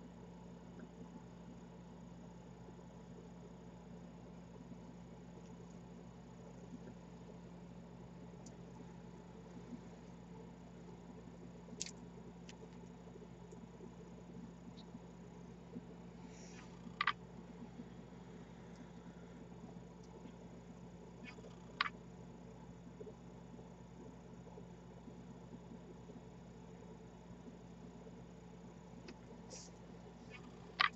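Quiet room tone with a steady low hum, broken by three faint, sharp clicks about five seconds apart in the middle.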